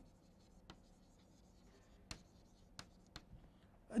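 Chalk writing on a blackboard: faint scratching of the chalk stick, with a few light taps as it strikes the board.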